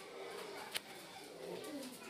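Low cooing bird calls under faint voices, with one sharp click about three-quarters of a second in.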